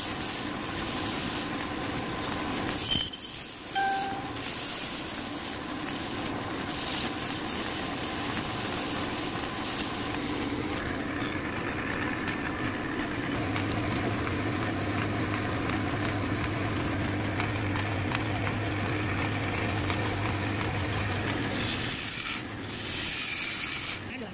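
Wood lathe running, with a steady hiss of a mango-wood blank being worked by hand as it spins. A low motor hum comes in about halfway through and drops out near the end.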